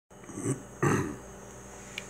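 A man clears his throat in two short sounds, a low grunt and then a louder noisy rasp a moment later, over a faint steady room hum.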